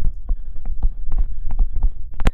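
A stylus writing digits on a pen tablet: an irregular run of about a dozen low thumps and taps as the strokes hit the surface.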